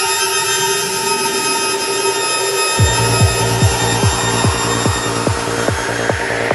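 Psytrance music: sustained synth tones with no beat, then about three seconds in a kick drum comes in, hitting about two and a half times a second. A rising noise sweep builds under it toward the end.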